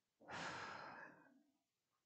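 A person's breath into a close microphone: one soft rush of air lasting about a second, fading out.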